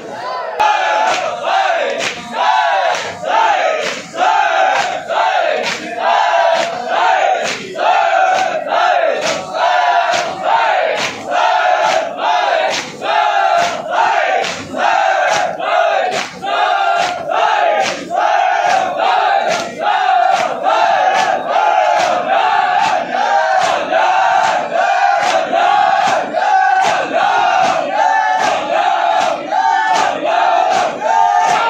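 A crowd of men chanting a noha together while beating their chests in unison (matam). The hand strikes land in a steady rhythm, about three every two seconds, under the loud group chant.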